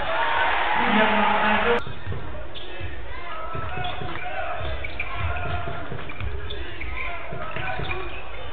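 Basketball being dribbled on a hardwood court, repeated low thumps in a large hall with voices around. A louder stretch of crowd noise fills the first couple of seconds and cuts off abruptly.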